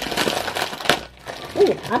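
A foil snack bag crinkling and tearing as it is pulled open by hand, a dense run of crackles through the first second, then quieter.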